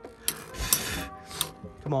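Two Metal Fight Beyblade spinning tops, Earth Eagle and Rock Scorpio, grinding around a plastic stadium, with a few sharp clicks as they knock together.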